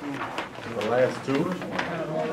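Low, indistinct voices of people talking in a meeting room, in short murmured phrases.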